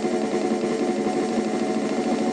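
Fast single-stroke roll played with drumsticks on a drum practice pad: an even, smooth flow of rapid strokes at steady loudness, with no accents.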